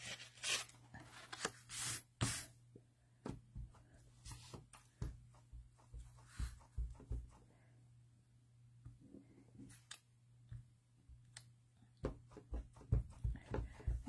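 Cardstock and a clear acrylic stamp block being handled on a craft table: paper sliding and rustling, with soft taps and clicks as the stamp is set down and pressed onto the card. There is a run of taps near the end.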